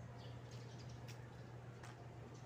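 Faint, short high chirps of small birds, with two sharp clicks and a steady low hum underneath.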